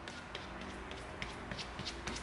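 Glue brush dabbing and scraping contact cement onto EVA foam: a string of faint, scratchy taps.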